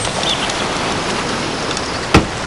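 Steady rushing hiss of sea surf.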